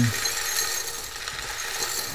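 Menthol crystals pouring out of a bag into a glass Erlenmeyer flask: a steady gritty rustling and pattering of crystals sliding onto glass and onto each other.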